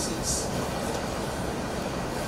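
Steady background noise and low rumble in a conference room between speakers, with a brief faint hiss just after the start.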